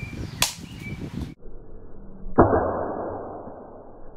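Katana cutting at a hanging coconut: a sharp crack about half a second in, then a sudden hit about two and a half seconds in followed by a rush of sound that fades away.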